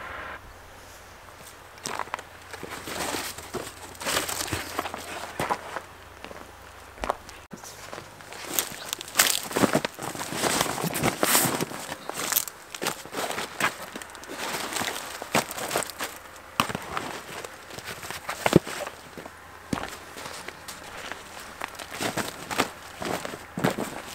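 Footsteps on a compost heap of chopped garden cuttings, with flattened cardboard rustling and scraping as it is laid down in sheets: a run of irregular crackling and crunching noises.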